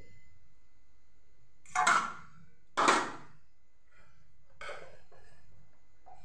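Steel kitchenware being handled by a griddle: two sharp clatters about a second apart, and a fainter one a couple of seconds later.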